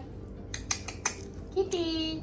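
Cutlery and dishes clinking: a handful of short, sharp clinks in quick succession, followed near the end by a brief voice.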